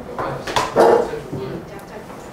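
A board eraser rubbing across a chalkboard in short strokes, with a brief voiced sound just under a second in that is the loudest thing.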